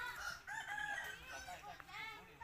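Faint chicken calls: many short, overlapping clucks and cries that rise and fall, with a rooster crowing among them.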